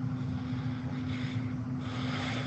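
Steady low electrical or motor hum with faint hiss, picked up on a video-call microphone in a pause between speakers.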